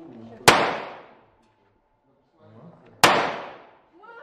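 Two shots from a Tigr rifle, the civilian SVD, in 7.62 mm, fired about two and a half seconds apart. Each is a sharp crack with a short fading echo.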